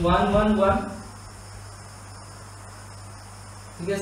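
A man's voice for about the first second, then a steady faint background hum with thin, high-pitched steady tones running underneath.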